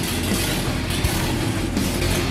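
A Harley-Davidson Sportster's 883 cc V-twin engine runs through short exhaust pipes, a steady loud rumble. Heavy rock music plays along with it.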